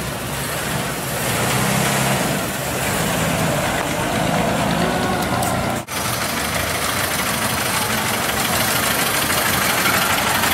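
Old car engines running at low speed as the cars drive slowly past. The sound drops out briefly about halfway through, and after that a Ford Model A's engine runs close by.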